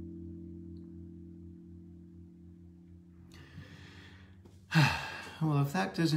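The last chord of a Chapman Stick's tapped strings ringing on and fading away over about three seconds. Near the end there is a breath, then a loud sigh with falling pitch, and speech begins.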